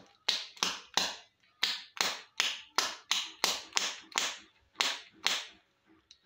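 Foil-wrapped plastic surprise egg shaken hard in the hand: about a dozen sharp crackling rattles, two to three a second, as the wrapper crinkles and the toy capsule knocks inside.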